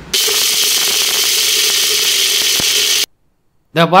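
Electric kitchen mixer grinder running with its small dry-grinding jar, milling dry fenugreek seeds to powder. It makes a steady whir that stops abruptly about three seconds in.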